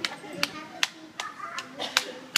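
Sharp hand claps at a steady pace, about two and a half a second, over faint voices.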